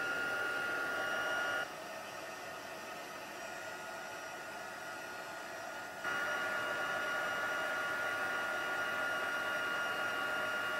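Handheld craft heat tool running with a steady blowing whine, drying wet colour on cardstock. It is louder in the first second and a half, quieter for about four seconds, and louder again from about six seconds in.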